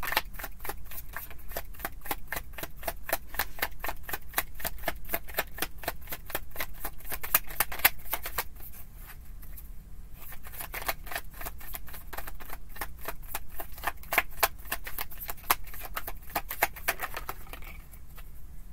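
A deck of tarot cards being shuffled hand over hand: a fast run of light card clicks, several a second, that eases off for a couple of seconds about halfway through and then picks up again.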